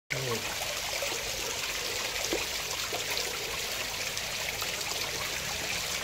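Pond water trickling and splashing steadily in a small tiled koi pond, with koi churning the surface.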